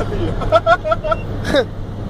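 A man laughing in a few short chuckles, then a falling laugh, over the steady low drone of a truck engine running.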